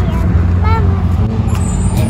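Steady low rumble of vehicle engines and traffic, with a person's voice briefly heard under it.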